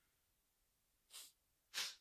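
Near silence, broken near the end by two short intakes of breath, the second louder.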